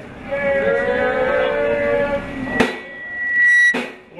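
A voice over the club's PA drawing out a long pitched call. About two and a half seconds in, a sharp click is followed by a loud, steady high-pitched tone lasting about a second, which ends with another click.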